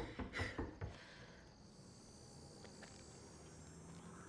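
Faint night ambience with a high, steady cricket trill, after a few short breaths or scuffles in the first second.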